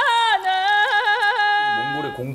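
A high sung voice in the background music, holding long notes and twice breaking into quick yodel-like warbles of about four turns a second. A man's speaking voice starts near the end.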